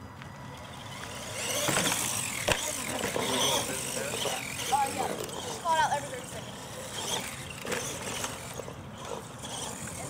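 R/C monster truck driving on turf, its motor revving up and down with a whine that rises and falls, busiest in the first half. A single sharp knock about two and a half seconds in.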